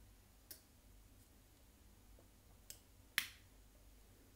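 Three short, sharp clicks over quiet room tone, the last one, a little before the end, the loudest.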